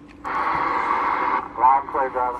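A Stryker SR-955HPC radio's speaker playing another station's reply to a radio check: a thin, hissy received voice with static, cutting off suddenly about a second and a half in, then a brief bit more voice near the end.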